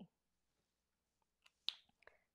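Near silence, then a few small sharp clicks near the end from a Copic alcohol marker being handled as the colourist swaps markers.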